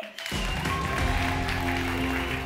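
Music starts about a third of a second in: a steady bass under sustained chords.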